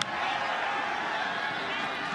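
Steady stadium crowd noise during a college football play, with a short click right at the start.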